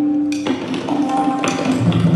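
Tabla being played in quick strokes, the right-hand dayan ringing at its tuned pitch, with deep bass strokes on the left-hand bayan near the end. A keyboard accompaniment sounds faintly underneath.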